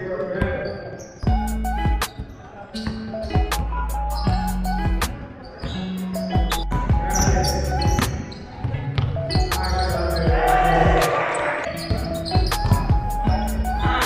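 A basketball bouncing and thudding repeatedly on a wooden sports-hall floor during play, heard over music with a heavy, sustained bass line. Voices rise briefly about two-thirds of the way through.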